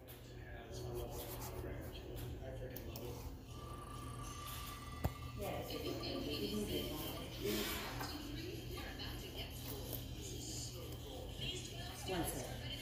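Faint, indistinct voices over a low steady hum, with a single sharp click about five seconds in.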